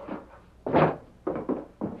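Staged radio sound effects of a man stepping into a room: a wooden door and footsteps, heard as four short thuds, the loudest a little under a second in.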